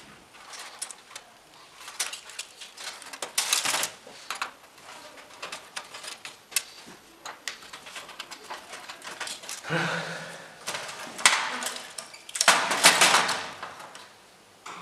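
Handling noise from a stripped fluorescent light fixture: clinks and knocks of a perforated steel lampholder strip against the fixture's sheet-metal base and the rustle of loose wires, with louder bursts about three and a half seconds in and again near the end.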